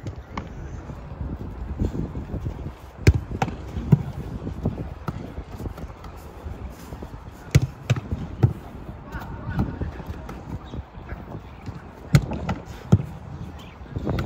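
Footballs being kicked and caught in goalkeeper training: scattered sharp thuds of boot on ball and ball into gloves, about eight in all in three clusters, over outdoor background noise and voices.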